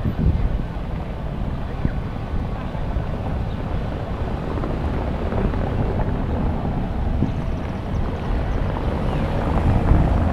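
Outdoor street ambience: a steady low rumble of wind on the microphone mixed with traffic noise, with louder gusts just after the start and near the end.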